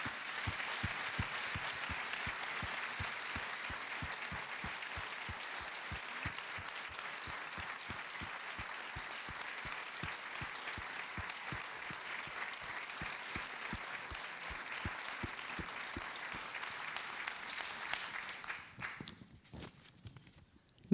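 Audience applauding steadily, a dense patter of many hands clapping that dies away shortly before the end.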